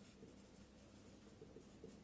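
Faint scratching of a marker pen writing on a whiteboard, barely above room tone.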